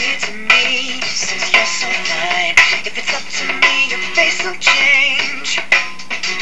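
Recorded pop song playing: processed singing over a dance beat, with a sharp hit about once a second.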